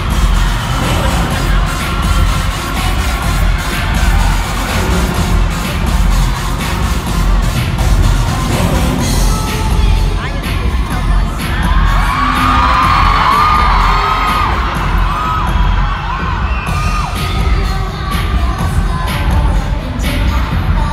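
Live dance-pop music over an arena sound system, recorded from the audience, with a steady booming bass beat and a crowd cheering. After the middle, high voices sing or shout over the music for a few seconds.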